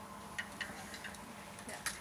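A few sharp, light clicks over faint room noise, about six in two seconds, the loudest near the end.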